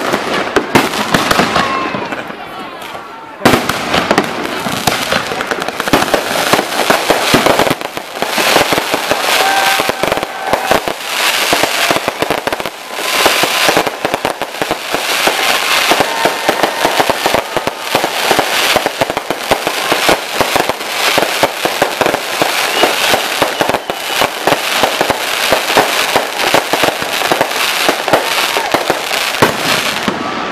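Fireworks display: aerial shells bursting in a dense, nearly continuous run of bangs and crackling. There is a short lull about two seconds in, broken by a loud burst at about three and a half seconds.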